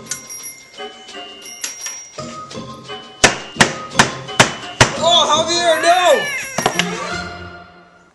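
Background music with bell-like tones. Partway through come five sharp knocks a little under half a second apart, typical of a large kitchen knife chopping a banana on a plastic cutting board, then a long vocal sound that falls in pitch at its end.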